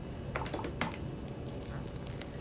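Keys tapped on an ultrasound machine's keyboard: a few light clicks, most of them in the first second, over a steady low hum.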